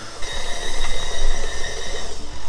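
Stand mixer's motor running at medium speed while its dough hook kneads bread dough: a steady mechanical whine with two high steady tones that set in just after the start.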